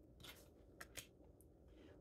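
A tarot card being slid and flipped over on a stone countertop, faint: a soft brush followed by a few light ticks.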